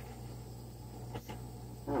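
Small handheld torch burning with a faint steady hiss as it is passed over wet acrylic pour paint to raise cells, with a couple of faint clicks about a second in.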